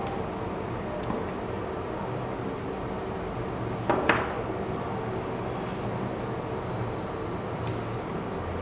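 Light handling noise over a steady low hum: about four seconds in, two quick knocks and a brief rustle as the plastic wall charger is lifted out of the vape kit's case, with a few faint ticks elsewhere.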